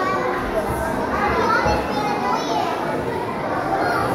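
A crowd of children talking and calling out at once, a steady babble of many young voices in a large hall.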